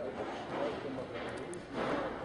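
A person speaking in short phrases, with brief bursts of rough noise under the voice late on.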